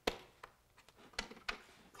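A few sharp clicks and taps of hands fitting small parts onto a hard plastic dome cover, the loudest right at the start and three more through the next second and a half.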